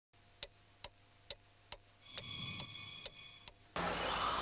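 Clock-like ticking, a little over two ticks a second, joined about halfway through by a sustained ringing, chime-like tone. Near the end it cuts off abruptly into room noise.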